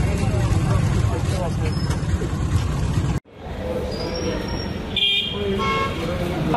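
Outdoor street noise with people talking in the background. After a sudden cut about three seconds in, the background is quieter, and a vehicle horn sounds briefly near the end.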